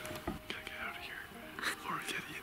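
Hushed whispering voices.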